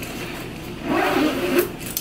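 Nylon diaper-bag backpack being handled, with a zipper rasping along for about a second in the middle.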